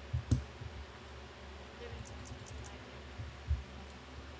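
Four short, crisp clicks in quick succession about two seconds in, made as chips are placed on an online roulette table. Scattered soft low thumps and one sharper click near the start sit over a faint steady background.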